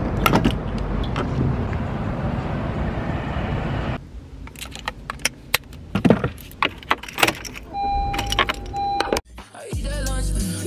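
A steady rush of gasoline being pumped into a car's tank through the pump nozzle for about four seconds. It cuts off suddenly and gives way to scattered clicks and knocks of handling inside a car, with two short beeps near the end.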